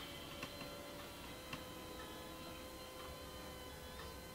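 Quiet room tone: faint ticks about once a second over a faint steady hum.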